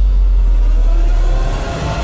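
Deep, sustained bass rumble of a dramatic sound effect in a TV serial's soundtrack, fading away near the end.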